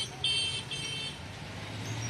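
Street traffic in heavy rain: a steady wash of rain and road noise with a low engine hum, and three short high-pitched toots in the first second.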